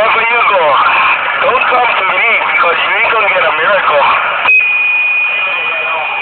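A person's voice talking for about four seconds, with thin, phone-quality sound. It is cut by a sharp click, and a steady high beep-like tone then holds to the end.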